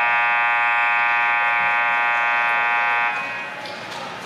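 Ice rink scoreboard horn sounding one steady buzzing tone for about three seconds, then cutting off.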